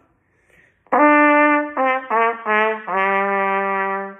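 Trumpet playing a short descending phrase in its low register: starting about a second in, a held note, then three short separate notes stepping down, then a long low note held near the bottom of the instrument's range.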